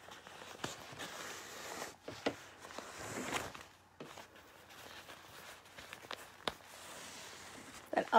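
Plastic tablecloth and newspaper stuffing rustling and crinkling as a needle is poked through and string is drawn in and out in a running stitch. Soft rasps come with a few sharp clicks.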